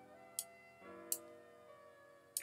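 Soft background music of held notes, with two sharp mouse clicks less than a second apart.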